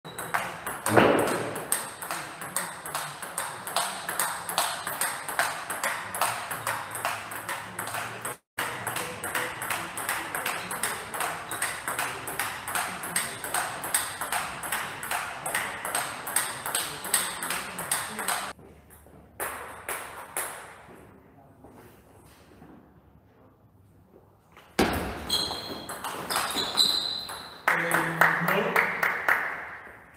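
A table tennis ball hit back and forth in a long, steady rally, with sharp bat and table clicks several times a second. The clicking stops about two-thirds of the way through, and near the end come a louder burst and a few short high squeaks.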